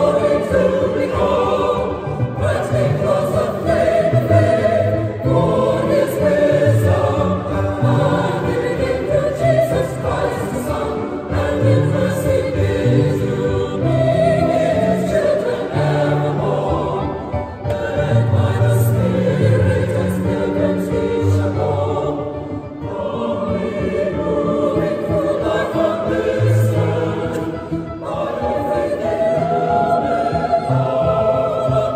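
Mixed choir of men's and women's voices singing in a large church, in long held phrases with short breaks between them a little over halfway through.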